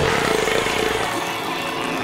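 Loud, dense rumbling commotion, a cartoon sound effect that starts abruptly and runs on steadily, with a faint held tone beneath it.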